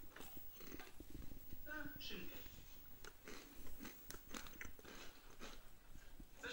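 Television soundtrack heard through the TV's speaker: a man biting and chewing food, with small crunching clicks, and a short spoken phrase about two seconds in.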